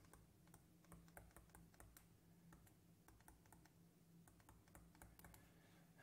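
Near silence broken by faint, irregular light clicks and taps from a pen stylus writing on a touchscreen, over a faint steady hum.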